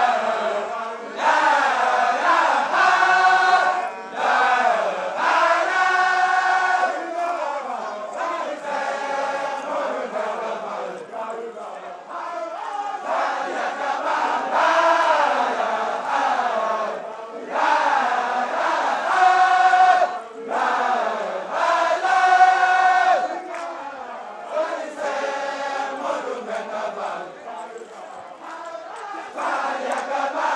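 Group of male voices chanting together, a Baye Fall devotional chant sung in short rising-and-falling phrases repeated again and again.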